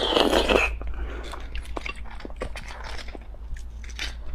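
Close-miked mouth sounds of eating raw sea urchin roe: a short loud slurp as the roe is taken in, then soft wet chewing with many small lip and tongue clicks.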